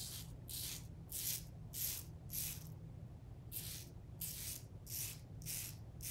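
RazoRock Game Changer 0.68 safety razor with a Feather blade scraping short strokes through lathered stubble against the grain. About ten strokes come at roughly two a second, with a pause of about a second in the middle.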